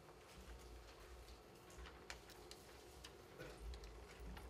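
Near silence: the room tone of a meeting hall, with a faint low rumble and a few scattered small clicks and rustles.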